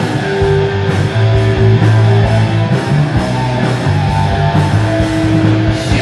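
Live rock band playing: electric guitars, bass guitar and drum kit.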